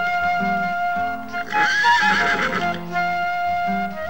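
A Przewalski's horse whinnies once, starting about one and a half seconds in and lasting about a second, with a wavering, shaky pitch. Flute-led background music with long held notes plays throughout.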